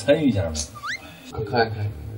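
Men talking in a small room, with one short rising whistle-like tone about a second in.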